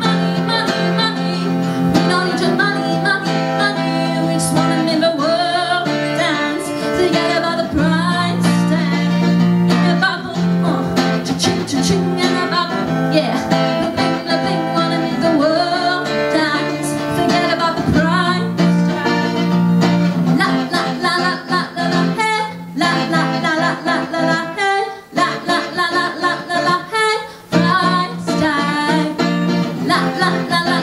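A woman singing a pop song live, accompanied by a strummed acoustic guitar, with a few short breaks in the sound in the last third.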